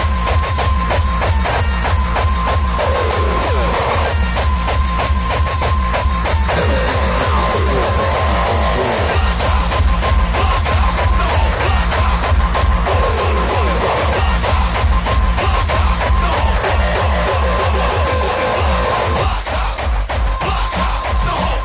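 Mainstream hardcore (gabber) electronic dance music: a fast, steady kick drum with heavy bass under a held high synth tone and sweeping synth lines. The bass drops out briefly near the end.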